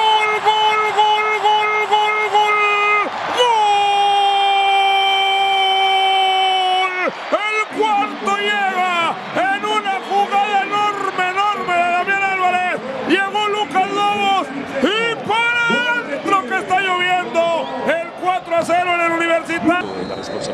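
A male football commentator's drawn-out goal cry, held on one high note for about three seconds, then taken up again for about three and a half seconds and sinking slightly. After that comes excited shouted calling, rising and falling in pitch.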